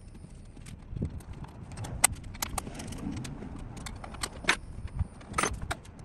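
Small metal tools and parts clinking and rattling during hand work in a stripped car's bare rear cargo area: irregular sharp clicks, the loudest about two seconds in and again near the end.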